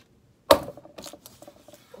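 A single hard knock about half a second in, then lighter clicks and rustling: something being set down on a dresser close to the microphone, with handling noise.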